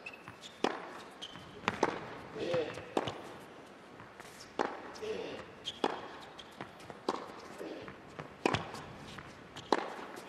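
Tennis rally: a tennis ball struck back and forth by rackets, a sharp pop about every second and a bit, with the ball's bounces on the court. Short voice sounds come between some of the shots.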